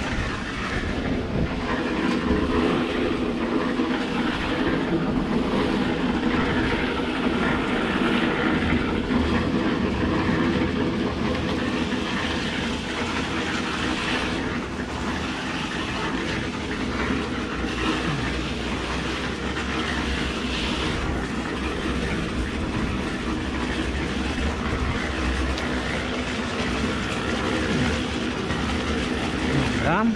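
A machine running steadily with a rattling clatter, under the scrape of an aluminium straightedge being drawn through wet concrete to level a slab.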